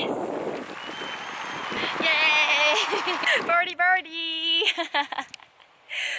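A swooshing sound effect fades over the first second or so. Then a person's voice comes in with short, high exclamations and brief speech, ending in a short pause.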